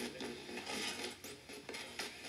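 FM radio of a portable cassette player, played through small plug-in speakers, giving off a steady hiss of static while tuned without an antenna, with no clear station coming in.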